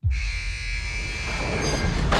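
A sustained high metallic squeal of several steady tones over a low rumble, cutting in abruptly and dying away near the end, like rail wheels squealing; part of a film trailer's soundtrack.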